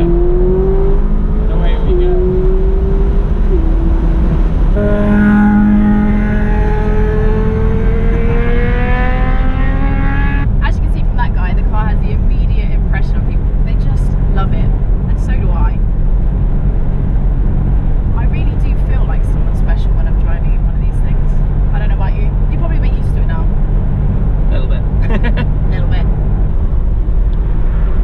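McLaren 570S Spider's twin-turbo 3.8-litre V8 heard from the open-top cabin, accelerating hard: its pitch climbs and drops twice at quick upshifts, then rises in one long pull that cuts off sharply about ten seconds in. After that, a steady engine and road drone with wind buffeting.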